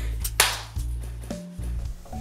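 Background music with steady low notes, and one sharp slap about half a second in: two work-gloved hands meeting in a high five.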